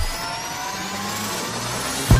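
Title-card sound effect: a steady rush of noise with several tones gliding slowly upward, a riser.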